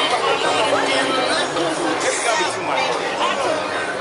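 Street crowd chatter: many voices talking at once, overlapping into a continuous babble with no single speaker standing out.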